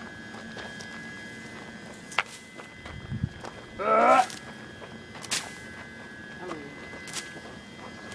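Footsteps and rustling through dry grass with a few sharp snaps, and a short voice call about four seconds in, the loudest sound. A faint steady high tone runs underneath.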